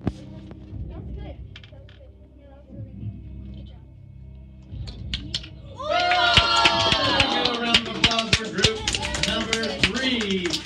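Low classroom murmur with a few light clicks, then about six seconds in a loud burst of children shouting and cheering, with clapping.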